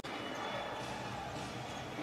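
Basketball being dribbled on a hardwood arena court, over a steady background of arena noise.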